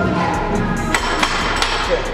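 Metal clanks of a steel barbell being set back onto a squat rack's hooks: three sharp knocks in the second half, over background music.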